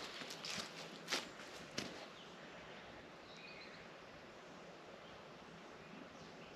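A few footsteps and rustles in the first two seconds as someone walks close past the microphone, then faint steady outdoor background hiss with a brief bird chirp a little after three seconds in.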